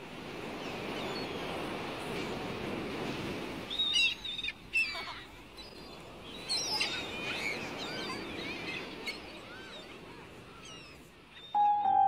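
Birds chirping and calling over a steady rush of outdoor ambient noise. An acoustic guitar comes in just before the end.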